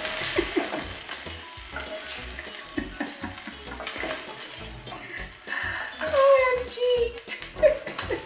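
Chicken breast pieces sizzling as they fry in oil in a pot, with a wooden spoon stirring and clicking against the pot as they are scooped out onto a plate. A woman's voice comes in briefly about six seconds in.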